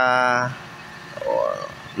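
Mostly speech: a man's voice drawn out on one steady vowel for about half a second, as a hesitation while reading a meter. A short, faint, wavering voice-like sound follows about a second later over a low steady background hiss.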